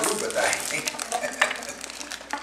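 Faint voices in the room with small clicks and rustles of toy packaging and wrappers being handled, one sharper click about halfway through.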